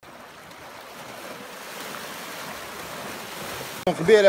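Small sea waves washing in among shoreline rocks: a steady wash of water that cuts off abruptly just before the end.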